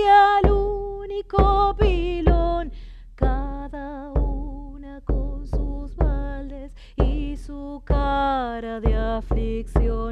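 A woman singing an Argentine folk song in long, wavering held notes, accompanying herself on a caja, an Andean frame drum, struck with a padded mallet about once or twice a second.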